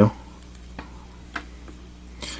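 Faint handling sounds of fingers working a small plastic action figure's leg and foot joints, with two small clicks about a second and a second and a half in, over a low steady hum.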